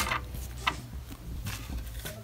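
Quiet handling of a cookie and a plastic icing bag on a tabletop, with one short click a little under a second in, over a low steady background hum.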